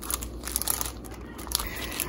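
Soft crinkling and rustling of a clear plastic sleeve holding an old, brittle newspaper as it is handled and slid across a stone countertop, with a few faint crackles.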